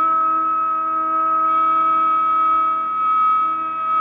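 Bamboo Carnatic flute in raga Reethigowla holding one long, steady high note without bends, over a steady lower drone.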